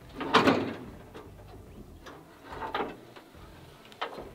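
The hood of a 1964 Ford F-250 being unlatched and raised by hand: a sharp clunk from the latch about half a second in, then a second, quieter noise from the hood near three seconds as it goes up.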